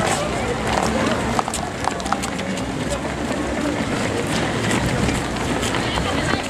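Many runners' footsteps on asphalt, a stream of irregular light taps over a steady hubbub of background voices.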